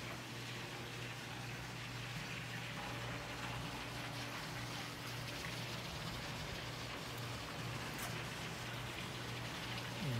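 Steady splashing and pattering of water from a backyard swimming pool's water feature spilling into the pool, with a low steady hum underneath.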